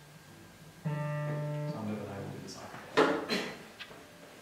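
A single held musical note with even overtones, starting about a second in and cutting off abruptly after about a second, followed near the end by a short, loud burst of voice.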